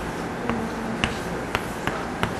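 Chalk tapping and clicking against a blackboard during writing: about four short, sharp clicks in two seconds over a steady room hum.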